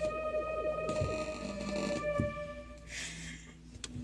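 Electronic keyboard played as a duet in long held, eerie synth tones, a low part sustained beneath a higher line, with the notes changing every second or so. There is a brief hiss about three seconds in.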